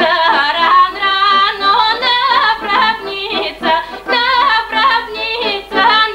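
A woman singing a Bulgarian folk song, her voice bending in quick ornaments, to an accordion accompaniment.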